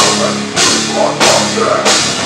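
Hardcore metal band playing live: distorted guitar and bass over a drum kit, with heavy accented hits about every 0.6 seconds.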